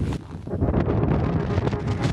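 Rushing air buffeting a small camera's microphone as a jumper leaps off a cliff and falls. It builds up about half a second in, then holds as a steady roar of wind noise.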